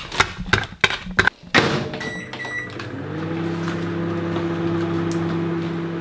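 Microwave oven being started: a few sharp clicks and knocks, two short keypad beeps, then the steady hum of the microwave running, which strengthens about three seconds in.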